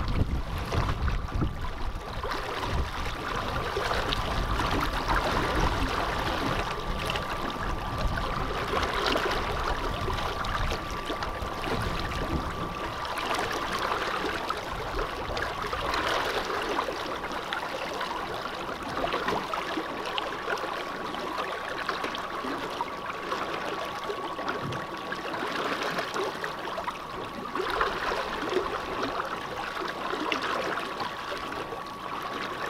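Water rushing and splashing along the hull of a small boat under way, with the faint steady whine of an ePropulsion Spirit 1.0 Plus electric outboard motor running throughout. A low rumble sits under it for roughly the first dozen seconds.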